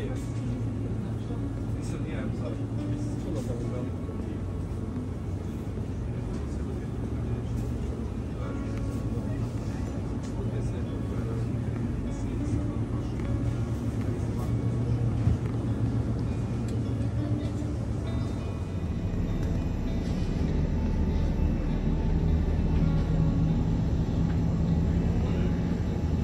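Supermarket ambience: a steady low hum under indistinct background voices, with the hum growing a little louder near the end.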